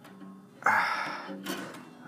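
Acoustic guitar strummed twice, about a second apart, with a pencil pressed across the strings as a makeshift capo; the strings ring on and fade after each strum.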